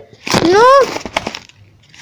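A boy's loud, distorted shout of "No!" in dismay, rising then falling in pitch, followed by a few crackles of tissue paper being handled in the box.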